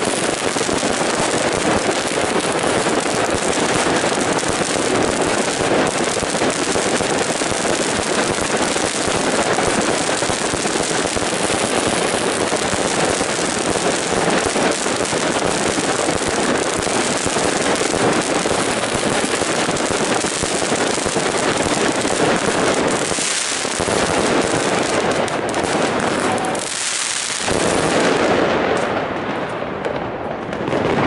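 Piromax PXB3907 Kinetic 100-shot fireworks cake firing: a dense, unbroken stream of launches and bursts in rapid succession, easing off briefly twice near the end.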